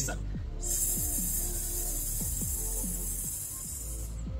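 A man hissing out a long, steady breath like a snake, the slow controlled exhale of a singer's breathing exercise, starting about half a second in. Background music plays underneath.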